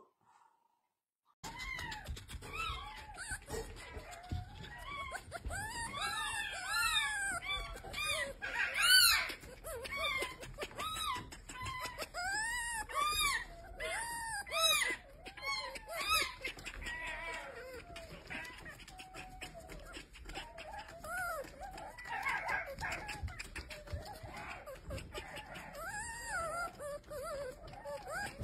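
A young red fox kit making many short, high whining squeaks. Each call rises and falls in pitch, and they come in quick clusters, loudest about nine seconds in.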